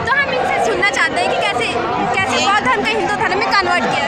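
Several people talking at once close to the microphone, their voices overlapping in a steady chatter over a crowd's background babble.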